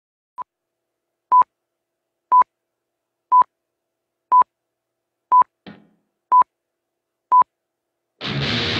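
Electronic metronome count-in: short, high single-pitch beeps, about one per second, eight in all, the first one softer. Between the sixth and seventh beep there is a faint, brief noise.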